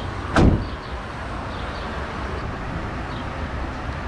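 The front passenger door of a 2012 Toyota Alphard being shut: one solid thud about half a second in.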